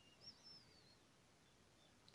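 Near silence: faint room hiss, with one faint high wavering chirp in the first second.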